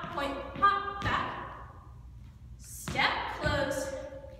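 Irish dance soft shoes landing on a studio floor as a dancer steps and jumps through a reel: a few dull thuds, with a woman's voice calling the steps over them.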